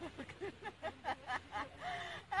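A woman's voice in a quick, even run of short, soft syllables, about four or five a second.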